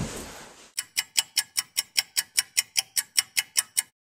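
Rapid ticking like a clock sound effect, about five even ticks a second for roughly three seconds, starting about a second in and cutting off suddenly to dead silence near the end.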